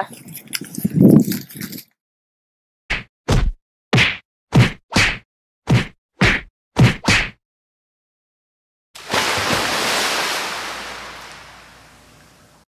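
A run of nine hard whacks, one after another about every half second, like blows being struck. After a pause comes a rush of noise that starts loud and fades away.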